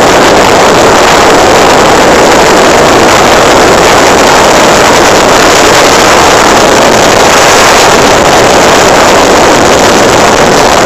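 Motorcycle riding at road speed: a loud, steady drone of engine and wind rushing over the microphone, without change.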